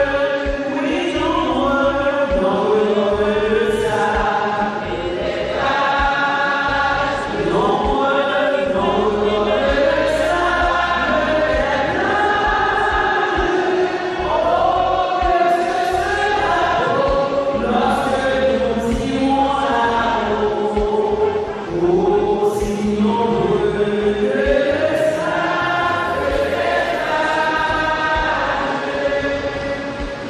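A choir singing a hymn together, the voices holding long notes.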